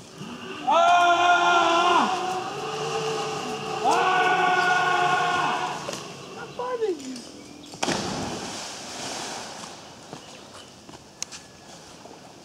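Long held yells from a person swinging out on a rope over a lake, two drawn-out cries, then a shorter cry falling in pitch as he lets go. About eight seconds in, a splash as his body hits the water, followed by a second or so of settling water.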